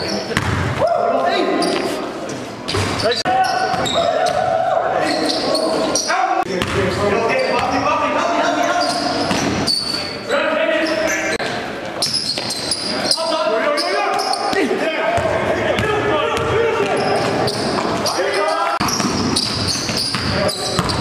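Basketballs bouncing on a gym floor, with indistinct voices of players and spectators throughout, echoing in the gymnasium.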